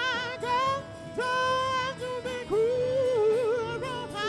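A man's recorded lead vocal track playing back through a mixing console: a high sung phrase of long held notes with vibrato. A faint steady note sits beneath it.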